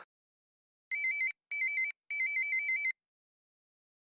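Mobile phone ringtone: an electronic warbling trill that flips rapidly between two pitches, in three bursts, two short and one longer, starting about a second in.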